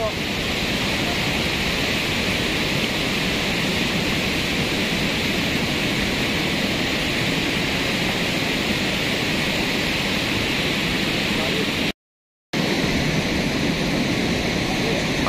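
Steady rushing of a cold lahar, a fast volcanic mudflow of water, sand and debris, pouring down the river channel. The sound cuts out completely for about half a second near the end.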